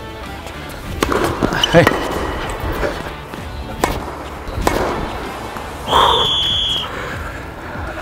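Tennis ball struck by rackets during a rally, several sharp hits a second or two apart, over background music. About six seconds in comes a short high steady tone.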